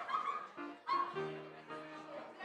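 A chord held on a keyboard instrument, starting a little after a second in, after two short high-pitched yelps, the first at the very start and the second just before the chord.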